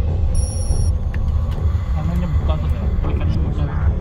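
Steady low rumble of a car being driven, heard from inside the cabin, with faint voices in the car. A brief high electronic tone sounds about half a second in.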